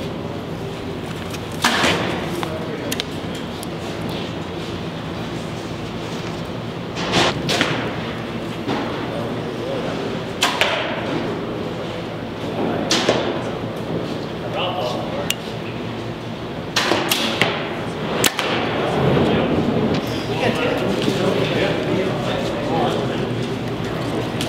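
Compound bows being shot: several sharp cracks of arrows released and striking foam targets, spaced a few seconds apart.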